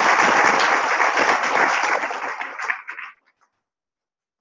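Audience applauding, thinning to a few last claps and stopping about three seconds in.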